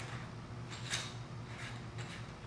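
A few faint light clicks near the middle as a bit is slipped into the open half-inch metal keyless chuck of a Hitachi DS18DSAL cordless drill.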